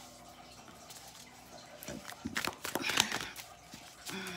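Tarot cards being handled: after about two seconds of quiet room tone, a run of short clicks and rustles as a card is laid down and the deck is worked.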